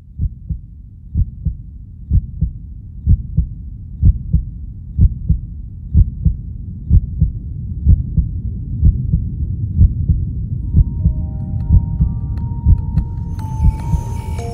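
Heartbeat sound effect: a steady lub-dub double thump about once a second, growing gradually louder. Held musical tones come in over it from about ten seconds in.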